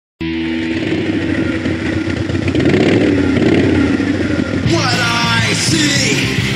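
Opening of a skate-punk rock song: a distorted electric guitar chord rings out as a steady drone, then a little before five seconds in the drums and cymbals crash in as the full band starts.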